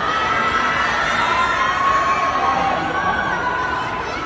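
Large crowd of fans screaming and cheering, many high voices overlapping in long held shrieks.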